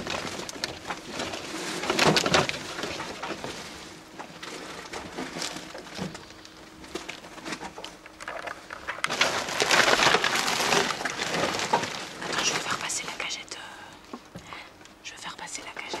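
Plastic bags and packaged vegetables rustling and crinkling as produce is handled and sorted, in irregular bursts of handling, with indistinct murmured voices.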